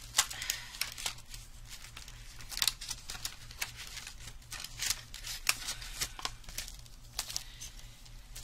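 Plastic-sleeved die packs and their card backings crinkling and rustling as they are handled and shuffled, with scattered sharp clicks and taps.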